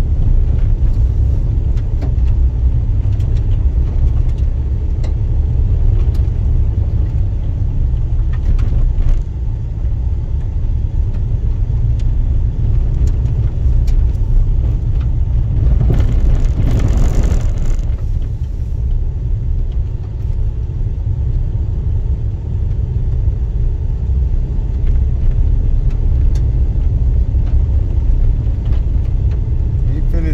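Car driving on an unpaved dirt road: a steady low rumble of tyres and engine, with occasional clicks of loose stones. About halfway through, a louder hissing wash rises for a couple of seconds and fades.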